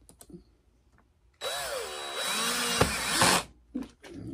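DeWalt cordless drill boring into the top of a driftwood log for about two seconds, its motor pitch rising and then falling as the trigger is squeezed and eased off. A few light handling clicks come before it.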